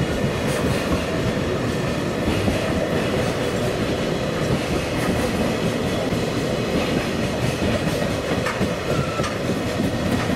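Container wagons of a long JR Freight train rolling past close by: a steady rumble with wheels clacking over the rail joints, and a faint brief squeal about nine seconds in.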